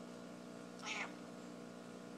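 Domestic cat giving a single short meow, about a quarter of a second long, just before the middle.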